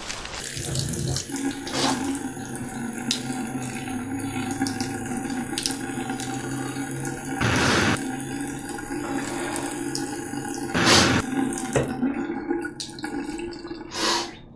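Water running from a tap into a sink, with a steady low hum beneath it and two louder gushes, about seven and a half and eleven seconds in.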